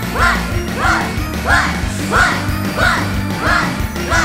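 Live rock band music with a steady beat, and over it a short shouted call repeated in time with the beat, about every two-thirds of a second.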